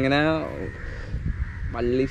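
A man's voice, talking at the start and again near the end, with a quieter pause between.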